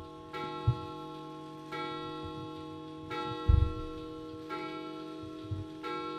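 Background music: a sustained chord struck again about every second and a half, each one ringing on until the next. A few soft low thumps come through it, the loudest about three and a half seconds in.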